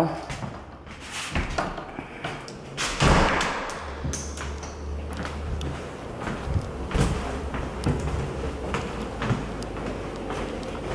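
A door shuts with a thud about three seconds in, among a few scattered knocks indoors.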